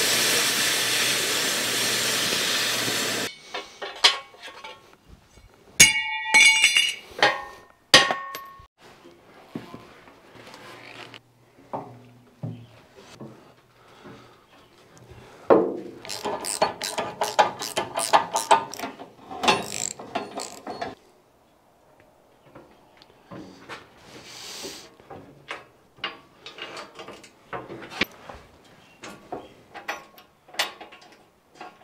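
Cutting torch, most likely a plasma cutter, slicing through a perforated steel guard plate: a steady loud hiss that stops abruptly about three seconds in. After it come scattered clinks and ringing knocks of the steel plate being handled, and from about the middle a run of rapid ratchet-like clicking lasting several seconds, with light clicks after it as the guard is fitted to the dozer.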